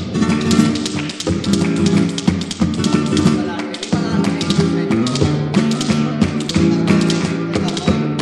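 Flamenco colombiana: guitar-led music with dense, sharp percussive taps struck several times a second throughout.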